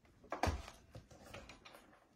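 Faint handling knocks as a handheld megaphone is set down, followed by light, fairly even clicking from a spinning prize wheel.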